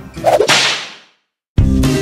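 A whip-crack sound effect, a single sharp crack whose tail fades out within about half a second. After a brief silence, music starts abruptly about a second and a half in.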